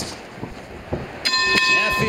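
Boxing ring bell ringing to end the round: a clear ringing tone struck about a second in and held, with a few short thuds before it.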